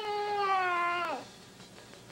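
A toddler's long, drawn-out whining cry on one slowly falling pitch that breaks off about a second in.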